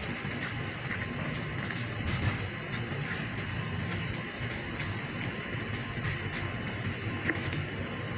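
Steady background hum with a few faint clicks as a knife cuts through a lamb leg against a plastic cutting board.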